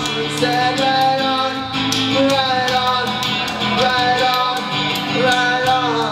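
Acoustic guitar strummed steadily under a live sung melody of long, held notes that slide between pitches.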